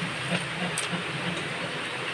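A large pot of fish and pork-bone soup boiling hard: a steady hiss with bubbling underneath.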